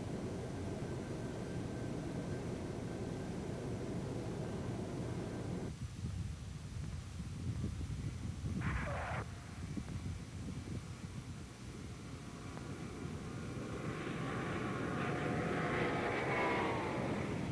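Lockheed L-1011 TriStar landing. Steady cockpit noise on the automatic approach gives way to the jet's Rolls-Royce RB211 engines outside, with a short tyre screech at touchdown about halfway through. A rising engine whine builds near the end as the airliner rolls along the runway.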